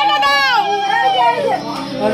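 A conch shell (shankha) blown in one long steady note that sags in pitch and breaks off about three-quarters of the way in, then starts up again right at the end, as is done at a Bengali wedding rite. Under it, high excited voices of children and women.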